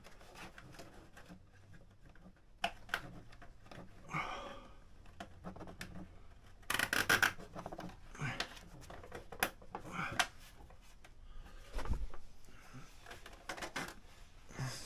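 Hands working parts under a motorcycle's rear, in a tight space: scattered clicks, rubs and scrapes of plastic and metal, with a quick run of clicks about seven seconds in and a dull thump near the end.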